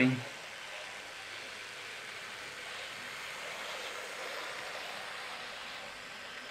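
Hornby Railroad Class 06 OO-gauge model diesel shunter running at full speed: a steady running noise of its small electric motor, gears and wheels on the rails, swelling a little toward the middle and easing near the end.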